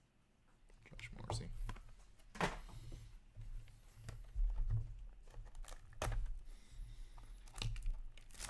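Plastic wrapping crinkling and tearing as a sealed trading-card box is unwrapped by hand, with irregular clicks and taps of the cardboard being handled. It starts about a second in.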